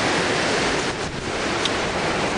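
Fast-flowing floodwater of a swollen brook, rushing in a steady, loud, even wash, the stream running over its banks and up to a small footbridge.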